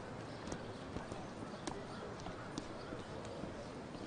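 Horse hooves clip-clopping at a walk on a paved street, a sharp knock about every half second, over a steady background of street noise.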